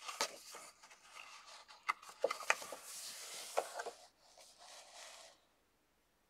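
Pages of a paper coloring book being handled and turned: a few taps and rustles, then a longer paper swish that stops suddenly about five seconds in.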